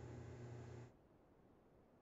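Near silence: a faint low room hum that cuts out to dead silence about halfway through.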